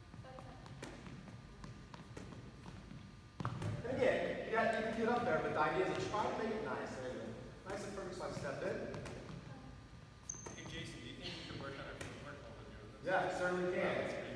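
A volleyball being set by hand and bouncing on a hardwood gym floor, a few short knocks, with several voices talking from a few seconds in.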